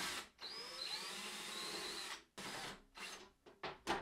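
Cordless DeWalt drill backing out the screws that hold a battery cabinet's side cover: the motor whines steadily for about two seconds, then runs in a few short spurts.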